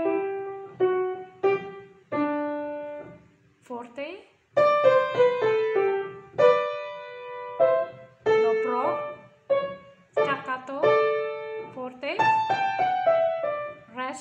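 Piano, one hand playing a simple melody note by note, each note ringing and fading, phrase after phrase with short pauses between.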